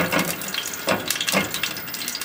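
Cooking oil heating in a nonstick pot over a high flame, with steady fine crackling and sizzling. A silicone spatula is moved through the oil, and a few louder strokes stand out.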